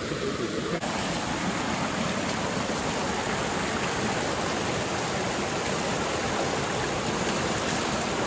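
Small mountain stream cascading over rocks close by: a steady rush of running water.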